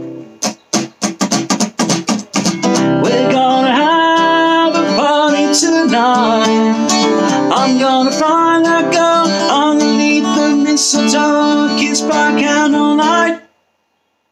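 Acoustic guitar playing a short snippet of a Christmas song: a run of quick strums, then strummed chords under a wordless vocal melody for about ten seconds, stopping abruptly near the end.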